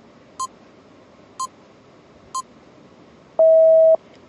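Quiz countdown timer sound effect: three short electronic ticks a second apart, then a loud steady beep lasting about half a second near the end, signalling that time is up.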